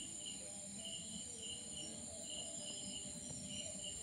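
Crickets and other night insects: a steady high trill with short chirps repeating a few times a second.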